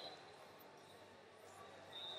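Near silence: faint hubbub of a large arena, with distant voices.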